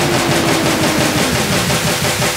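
Hard techno in a DJ mix: a dense, noisy wash of sound over a fast stuttering low pulse, with a synth tone sliding down in pitch, dropping more steeply about a second in.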